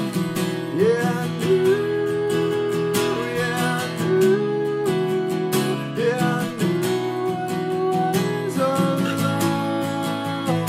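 Steel-string acoustic guitar strummed steadily, with a man's voice singing long held notes over it, four phrases each sliding up into pitch.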